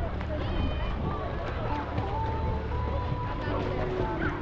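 Lake water sloshing against a GoPro held at the surface, a steady low rumble, with faint distant voices of people at the beach.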